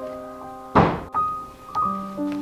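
Gentle piano music, single notes rung one after another, with a short loud noisy thump a little under a second in that cuts off abruptly.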